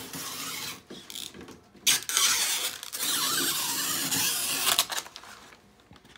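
Scraping and rushing noise from hands-on work on a pneumatic screen-mesh stretcher, with a sharp click just before two seconds in. A louder noise follows for about three seconds, then fades.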